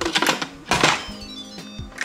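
The plastic lid of an Instant Pot pressure cooker being set on and twisted shut, giving clicks and a louder clunk just under a second in, over steady background music.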